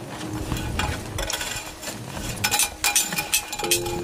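Light metallic clinks and rattles from handling a small butane gas lantern, its metal cap, glass globe and hanging chain knocking together, with a short cluster of ticks late on.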